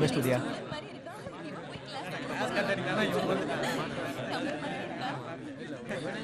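Chatter of many voices at once: a roomful of students talking among themselves.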